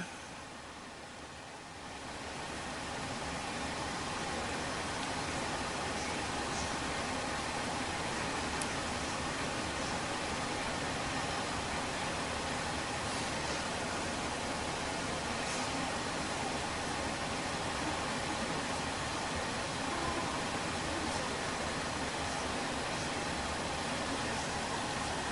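A steady hiss-like noise that swells a little over the first few seconds and then holds level.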